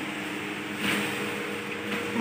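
A faint steady hum under quiet room tone, with a brief soft rustle about a second in.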